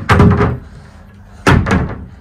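Wooden wardrobe doors being pushed shut: a loud knock at the start and another about a second and a half later.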